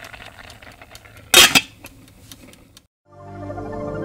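A pot lid clanks once against a stainless steel cooking pot, a short loud clatter about a second and a half in, over faint room sound and small ticks. After a brief silence, soft synthesizer music fades in about three seconds in.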